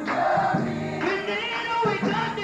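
Live gospel music: a woman's lead vocal over a choir, with a band and drums playing behind.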